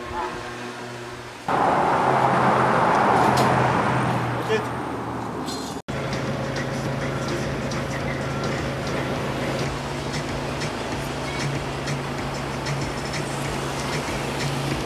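Road traffic: a motor vehicle passes close by about a second and a half in, loud and then fading away, followed by steady traffic noise with a low engine hum.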